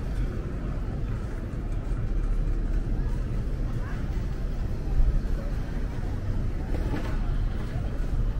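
Busy city street ambience: a steady low rumble of traffic with the scattered chatter of passing pedestrians.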